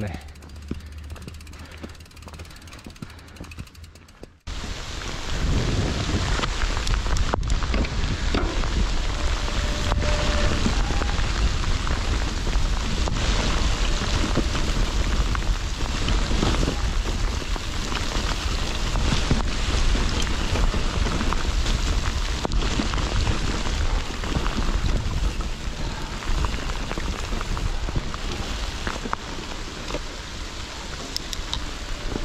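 Mountain bike ridden fast down a wet, muddy, leaf-covered trail, starting suddenly about four seconds in: a loud, steady rush of tyres through wet mud and leaves, with wind rumbling on the action camera's microphone. Before that, much quieter riding on a dry trail.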